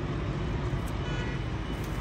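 Steady hum of distant road traffic, with no distinct events.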